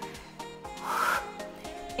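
Quiet background music with steady held tones, and one short hiss-like rush about a second in.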